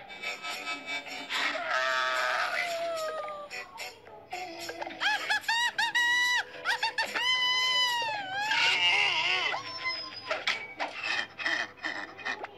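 Cartoon soundtrack: lively background music with comic sound effects and bending, wordless vocal sounds, ending in a run of quick clicks.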